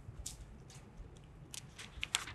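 A few faint, crisp ticks and rustles from small handling noises.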